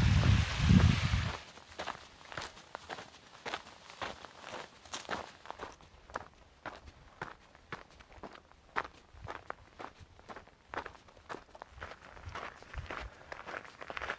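A hiker's footsteps crunching steadily along a rocky dirt trail, about two steps a second, after a brief rush of noise at the start.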